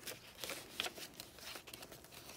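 Paper pages and cardstock pieces of a chunky handmade junk journal being handled, with soft rustles and a few light taps.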